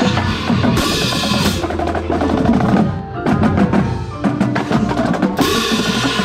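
Marching percussion ensemble playing: snare, tenor and bass drums with a pair of RCC hand crash cymbals close by, crashing about a second in and again near the end, over pitched notes.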